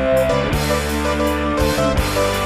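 Background music: held chords over a steady low line.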